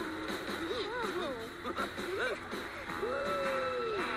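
Cartoon voices whooping and exclaiming without words over background music, with one long drawn-out call about three seconds in.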